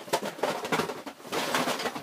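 Dense, irregular rattling and rustling as a boxed LEGO set is handled and swung about.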